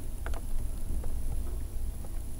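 A few faint clicks from a computer keyboard and mouse over a steady low hum.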